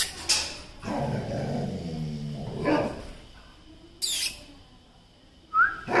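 A dog vocalizing: a couple of sharp barks, a drawn-out low call about a second in, and a brief high rising yelp near the end.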